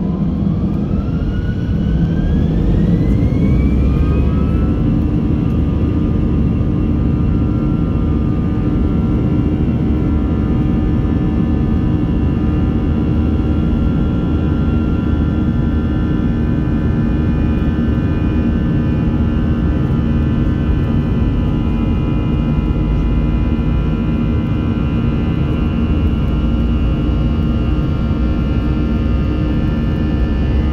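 Airbus A320 jet engines spooling up to takeoff thrust, heard from inside the cabin: a whine rises steeply over the first few seconds, then holds as a steady high whine over a heavy rumble as the airliner accelerates down the runway on its takeoff roll.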